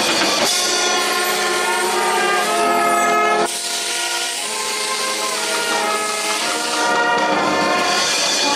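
Brass fanfarra playing held chords on trumpets, trombones and sousaphones. The band cuts sharply to a new chord about three and a half seconds in.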